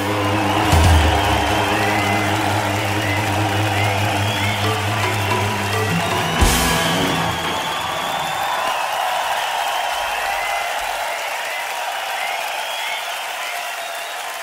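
A live electronic rock band ends a piece on a held chord, with a final crash about six and a half seconds in, while the crowd cheers. The music stops about halfway through, and crowd cheering carries on alone.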